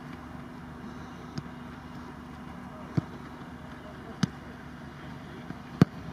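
A football kicked on grass four times, about a second and a half apart: short passes, then a harder strike near the end, which is the loudest.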